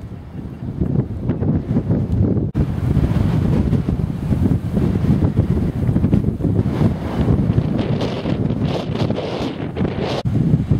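Wind buffeting the camcorder microphone in gusts, a heavy low rumble that covers everything else. There is a brief break about two and a half seconds in.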